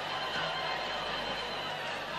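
Live concert sound from a large Arabic orchestra on stage, a steady wash with faint high held tones, mixed with audience noise.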